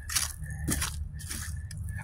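Footsteps crunching through dry fallen leaves, a string of irregular crunches over a low steady rumble.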